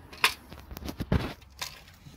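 A few light metallic clicks and rattles, about five over two seconds with one duller knock near the middle, as the loose rod leg of an aluminium sluice box is angled in its bracket.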